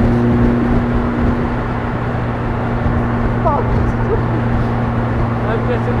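Ariel Atom 3.5's supercharged 2.0-litre Honda four-cylinder engine cruising at steady revs, a constant drone mixed with wind and road noise in the open cockpit.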